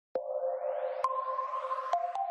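Short electronic logo sting: steady synth tones that step up in pitch with a sharp click about a second in and again near the end, over a rising whoosh.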